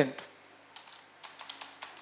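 Computer keyboard typing: a quick run of keystrokes that starts about half a second in and goes on until near the end.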